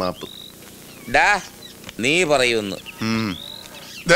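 Three short vocal sounds from a man, brief exclamations or calls with pitch sliding up and down, separated by quiet gaps. A faint high chirp is heard near the start.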